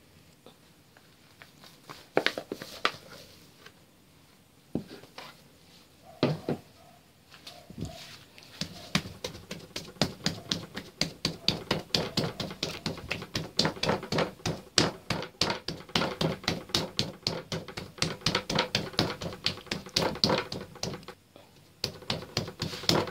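Hands punching down and kneading risen yeast dough for steamed buns: a few scattered soft knocks, then from about nine seconds in a quick, even run of pats and slaps on the dough, about four a second.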